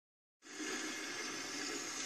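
Steady hiss of falling rain that comes in about half a second in.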